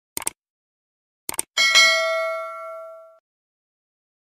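Subscribe-button sound effect: two quick mouse clicks, another pair of clicks about a second later, then a bright bell ding that rings out and fades over about a second and a half.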